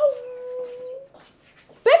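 A woman's long, high, drawn-out vocal exclamation, an 'ooh' that sinks a little in pitch and trails off about a second in. A spoken word begins near the end.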